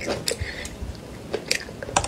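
Close-up mouth sounds of biting and chewing seasoned flat green beans, with irregular crisp crunches, the sharpest about one and a half seconds in and again near the end.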